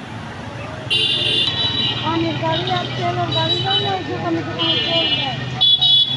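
Street traffic with a steady engine hum underneath and short, high-pitched vehicle horn beeps: one about a second in, then two more near the end. Voices of people talk in the background through the middle.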